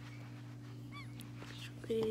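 A dog gives one short, faint, high whimper about a second in, over a steady low hum; a spoken word comes loudly at the very end.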